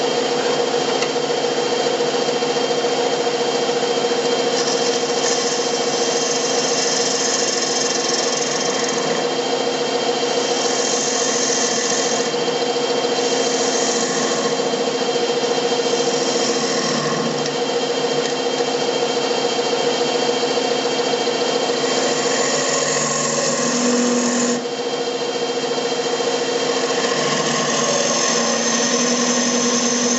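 Wood lathe running with a steady motor hum while a turning tool cuts the spinning cherry blank, the cutting coming in about half a dozen scraping bursts of a second or two each, from about five seconds in.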